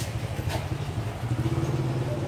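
Small motorbike engine running at low speed, a steady low hum, with two light clicks in the first half second.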